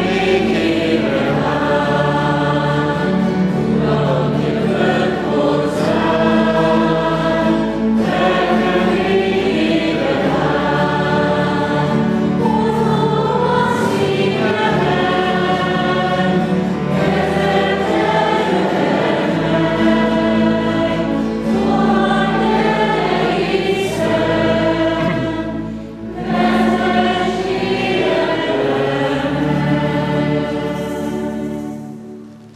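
Many voices singing a church hymn together, with sustained low accompanying notes underneath; this is the entrance hymn before the Mass begins. The singing breaks briefly about four seconds before the end, then goes on.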